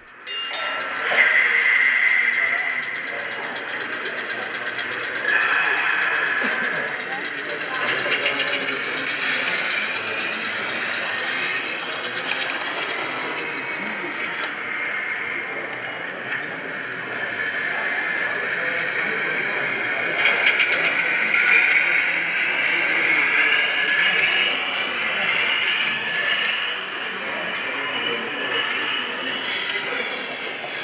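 Model Belgian suburban trams running on an exhibition layout, their onboard sound modules playing realistic tram running sounds, over a steady background of visitors' voices.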